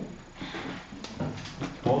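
Felt-tip marker rubbing across a whiteboard in a few short strokes as a line is drawn.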